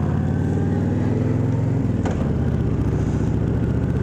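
Honda VTX 1300R's V-twin engine running as the motorcycle rides at low speed in city traffic. Its note changes about two seconds in, with a brief click.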